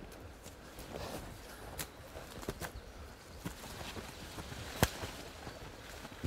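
Footsteps pushing through dense woodland undergrowth: scattered crackles of leaves and twigs, with one sharper twig snap about five seconds in.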